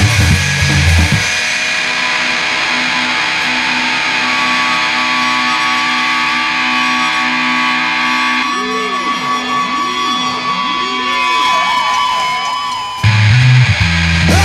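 Punk/indie rock song in a breakdown: about a second in, the drums and low end drop out, leaving held electric guitar notes. Past the middle, wavering, bending guitar lines come in, and the full band crashes back in about a second before the end.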